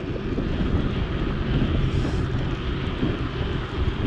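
Steady rush of wind over the microphone of a handlebar-mounted camera, with the road noise of a bicycle rolling along asphalt.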